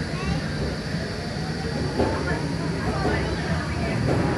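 A Pantheon train, an Intamin steel launch-coaster train, rolling past slowly through the station on its polyurethane wheels, a steady low rumble with faint voices behind it.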